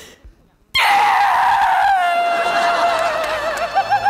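A young woman's long, loud wailing cry of "Dad!" (爹), starting suddenly about three-quarters of a second in, sliding slightly down in pitch and then wavering in a sobbing tremble near the end: a staged, theatrical cry of grief.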